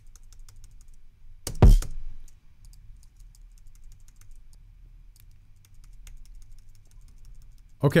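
Light computer keyboard and mouse clicks while audio clips are being duplicated in a music program, with a single kick drum hit sounding once about one and a half seconds in; the kick is the loudest sound.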